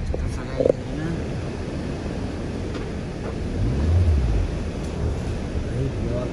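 Car driving on a rough, unpaved gravel road, heard inside the cabin: a steady low rumble of tyres and engine, swelling louder about four seconds in.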